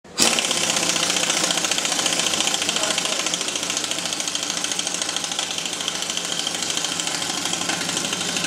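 Pneumatic impact wrench hammering steadily, driving the bolts of the bolted rim ring on a large low-pressure off-road tyre. A fast, even rattle that starts a moment in and runs without a break.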